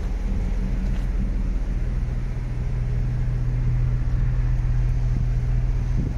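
Steady low hum with a faint hiss above it.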